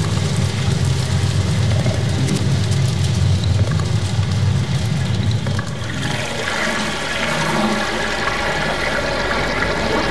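Designed soundtrack effect of rushing, gushing water with a deep rumble. About six seconds in it gives way to a lighter texture with steady sustained tones.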